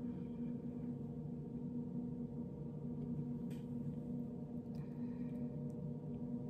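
A steady low hum made of several held pitches runs throughout. A few faint clicks and rustles come about halfway through and again later, as hair is rolled and handled.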